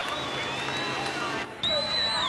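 Busy track-side background of voices and crowd noise, with a loud, steady, high-pitched tone for under a second near the end.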